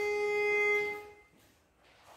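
Pitch pipe blown, sounding one steady note that stops about a second in: the starting pitch given to the chorus before they sing a cappella.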